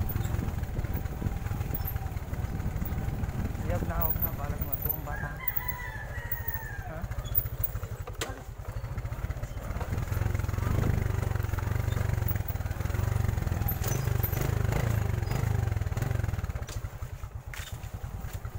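Steady low rumble of handling noise on the moving camera's microphone, with a rooster crowing once about five seconds in.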